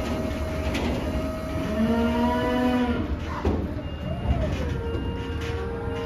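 Limousin calves mooing several times, with one long, low moo about two seconds in and a long, higher one near the end. Under the calls is the low, steady rumble of the livestock truck's idling engine.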